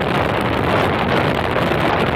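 Motolux Rossi RS 108r scooter's engine and variator drive running steadily at about 60 km/h, largely covered by heavy wind buffeting on the microphone. The front variator is a 2 mm larger performance unit with 8 g rollers.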